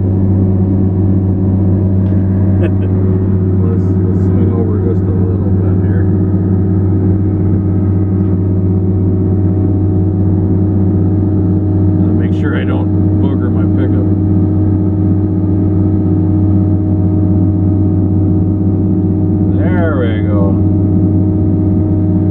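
Timbco feller buncher's diesel engine running steadily at high throttle, heard from inside the cab, with its hot-saw disc felling head spinning to blow snow off with its wind.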